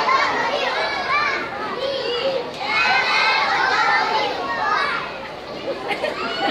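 A crowd of young children talking and calling out all at once, many high voices overlapping, in two louder swells with a slight lull near the end.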